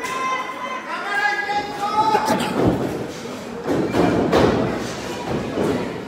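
Heavy thuds of wrestlers' bodies hitting the ring, a few from about two seconds in and a denser run around four seconds, over shouting voices from the crowd.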